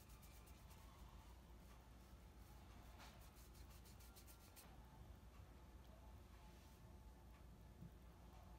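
Near silence: a faint low room hum, with soft, quick scratching of a paintbrush on paper in short runs, the longest about three to four and a half seconds in.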